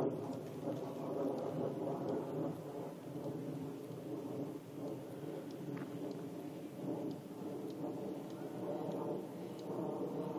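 Fighter jet flying high overhead: a steady low rumble of jet engine noise that dips a little and swells again near the end.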